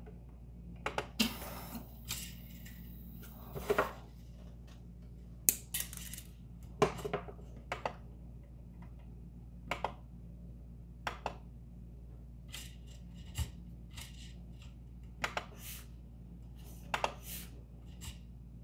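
Scattered light clicks and ticks from handling a Prusa MK3S+ 3D printer: its control knob is pressed and filament is pushed by hand into the extruder, with a soft rustle from about one to four seconds in. The autoload is not catching the filament, a fault the owner puts down to the filament sensor.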